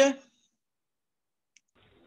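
A man's voice finishing a word, then dead silence with one faint click about one and a half seconds in.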